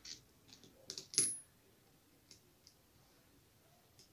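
A few small clicks and taps of metal fishing-reel parts being handled and fitted onto the reel body. The loudest comes about a second in, with a brief high ring, and two fainter ticks follow.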